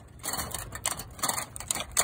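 Irregular small clicks and scrapes of hands handling a watercolour paint tube and metal paint tin, the paint in the tube too frozen to squeeze out. The loudest click comes near the end.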